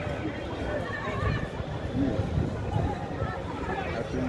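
Distant voices shouting and calling across a football pitch, several high-pitched calls overlapping, over a steady low rumble.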